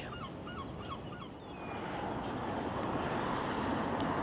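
A bird gives about five short honking calls in quick succession. Then road traffic noise swells steadily as a car approaches on the road.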